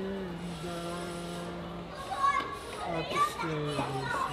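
A man singing unaccompanied, holding one long steady note for about the first two seconds and starting another held note near the end. Children's voices come in between.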